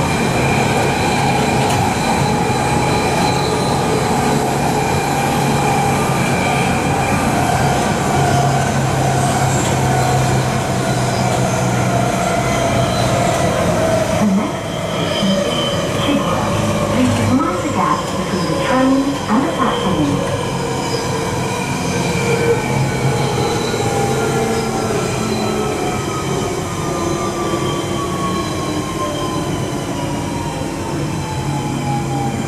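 Inside a London Underground 1992 Stock train car: steady running noise of wheels on rails, with a motor whine whose pitch falls slowly through the second half as the train slows into a station. Brief knocks and rattles come about halfway through.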